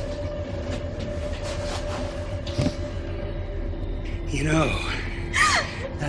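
Film soundtrack: a low rumbling drone with a steady held tone under it, then, from about four seconds in, wordless vocal sounds that glide up and down in pitch, like gasps or cries.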